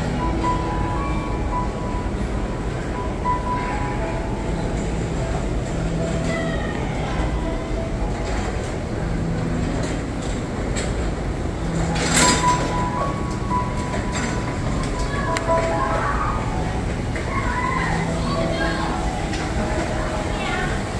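Busy food-hall ambience: a steady low hum with indistinct voices and a simple background melody. A brief loud clatter comes about twelve seconds in.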